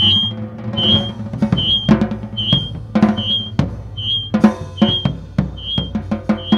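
Live improvised drum-kit playing: snare and bass-drum strikes in an irregular pattern over a steady low drone, with a short high ping repeating about every 0.8 seconds.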